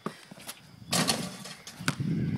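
A few scattered sharp knocks and a heavier thud, the last knock near the end a basketball bouncing on a concrete court.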